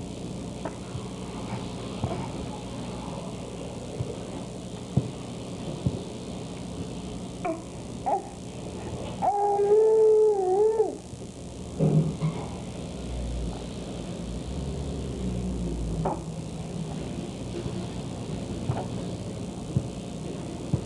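A baby lying on its tummy gives one fussy, wavering cry lasting about two seconds, a little over nine seconds in. A few faint knocks come before and after it, over a steady low hum.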